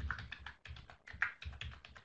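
Typing on a computer keyboard: a quick, faint run of keystrokes.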